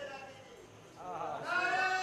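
A zakir's voice chanting a majlis recitation into a microphone, in long held notes that waver and glide in pitch. It dips low at first, then comes back in about a second in and grows louder.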